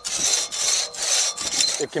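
Crosscut saw, worked by one man, cutting through a log in fast back-and-forth strokes, about two a second, each stroke a rasping of steel teeth through wood.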